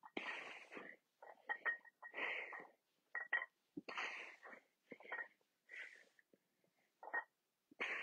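A person breathing hard through the mouth during dumbbell chest presses: a forceful exhale about every two seconds, with shorter breaths in between.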